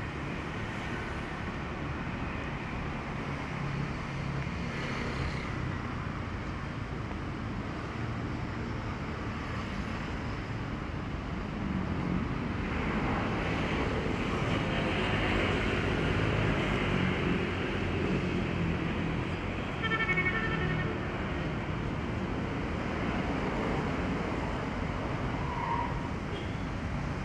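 Road traffic going past, a steady rumble of motor vehicles that grows louder about halfway through as vehicles pass close by, with a brief high-pitched sound about twenty seconds in.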